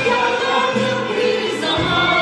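A woman singing a Turkish art song in long held notes that shift in pitch, over an instrumental ensemble of Turkish classical instruments including an oud.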